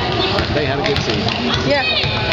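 Overlapping chatter of gym spectators, many voices talking at once, with a couple of sharp clicks in the first second.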